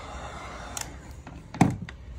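Heat gun blowing hot air onto a drilled hole in PVC decking, then switched off with a click just under a second in. About a second and a half in, a single loud thunk as the heat gun is set down on the deck boards.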